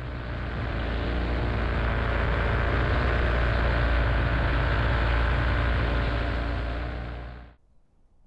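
Paramotor engine and propeller running at steady power in flight: a low, even drone. It swells up over the first second and fades out near the end.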